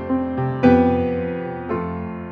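Improvised solo piano music: slow chords struck and left to ring, each fading away before the next. The strongest chord comes about two-thirds of a second in.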